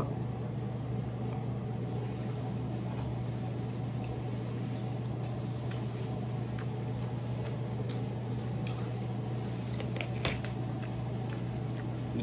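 Steady low hum of room or appliance noise, with a few faint clicks and a slightly louder knock about ten seconds in.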